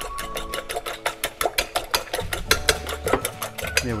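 Fork whisking beaten eggs in a glass Pyrex measuring jug, the tines clicking rapidly and evenly against the glass, about seven or eight strokes a second.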